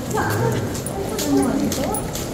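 Several people's voices talking indistinctly, one rising and falling in pitch, with scattered light clicks of footsteps on the walkway.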